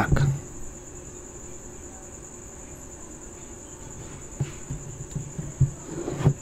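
A steady, high-pitched, insect-like tone sits in the background of a quiet room, with a few soft low knocks between about four and six seconds in.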